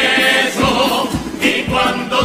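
Carnival comparsa choir singing a held, sustained passage in harmony, with a regular drum beat underneath.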